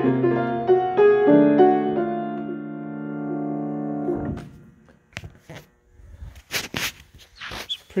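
A 1970s Kawai 5'4" baby grand piano being played: a few changing notes, then a chord held for about three seconds and damped suddenly about four seconds in. A few sharp knocks and rustles follow.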